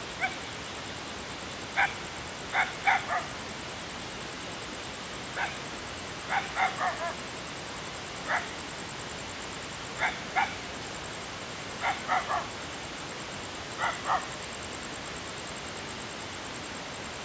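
An animal giving short, sharp calls, some single and some in quick runs of two to four, repeated every second or two over a steady background hiss.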